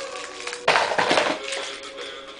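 Music playing, with a loud clatter of loose plastic Lego bricks about two-thirds of a second in.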